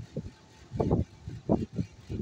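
People's voices talking in short bursts, low and muffled.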